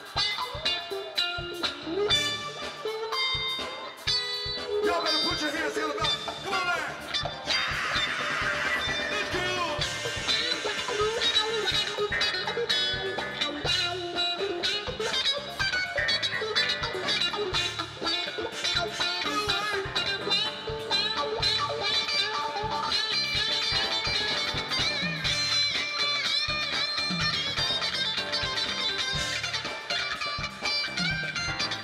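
Live band music: an electric guitar plays a lead with bent notes over a steady drum groove.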